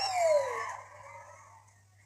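Audience member's high teasing cry that falls in pitch and dies away within the first second, leaving only a faint steady low hum.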